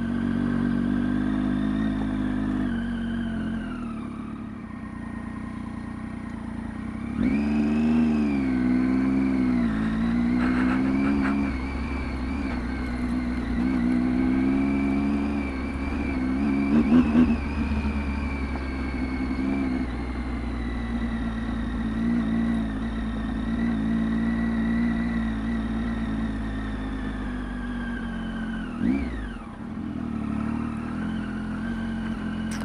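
Triumph Tiger 800 XCx's inline three-cylinder engine running at low road speed, its pitch rising and falling with the throttle and getting louder about a quarter of the way in. There is a brief burst of knocks just past the middle.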